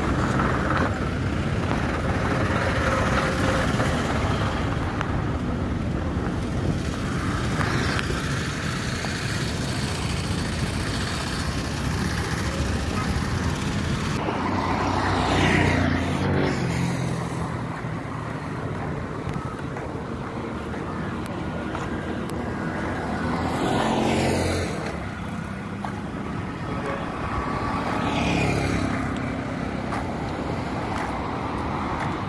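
Roadside street traffic: a steady hum of motor traffic, with vehicles passing close by three times in the second half, each rising in loudness and falling in pitch as it goes past; the first is a motorcycle.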